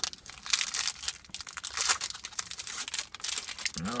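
Shiny plastic protein-bar wrapper being opened by hand, crinkling with a run of irregular crackles.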